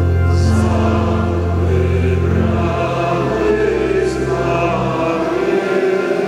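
Voices singing a hymn with church organ accompaniment, over long held low bass notes; the lowest note drops out about three seconds in.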